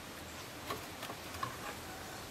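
A few faint, short ticks and clicks, spaced irregularly, over a low steady background.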